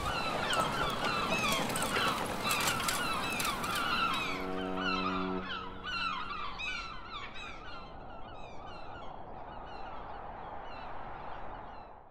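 A flock of birds calling over and over, many short calls overlapping. About four seconds in comes a single low, steady tone lasting about a second. The calls fade out gradually toward the end.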